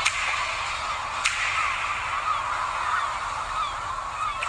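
Sharp mouse-click sound effects from an animated subscribe-button overlay, two clicks about a second and a quarter apart, over a steady hiss. Short chirping glides come in near the end.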